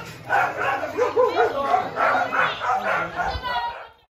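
Indistinct voices of several people talking at once, cutting off suddenly at the end.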